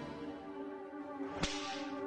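Sustained music chord with a single sharp whip-crack-like swish sound effect about one and a half seconds in, its hiss trailing away downward.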